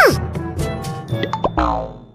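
Background music with cartoon sound effects laid over it: a steep falling whistle-like glide right at the start, then a quick rising 'boing' about a second and a half in. The music drops out at the end.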